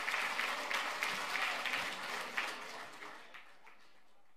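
Audience applauding at the close of a speech, the clapping dying away near the end.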